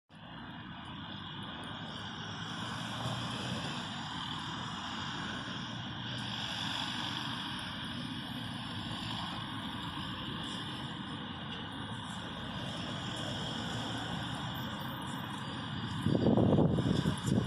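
Steady road traffic from cars driving around a roundabout: a continuous wash of engine and tyre noise that swells gently as cars pass, picked up by a smartphone's built-in microphone.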